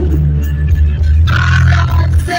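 Live reggae band playing loud, with a heavy bass line and drums throughout; a brighter, higher part joins about a second and a quarter in.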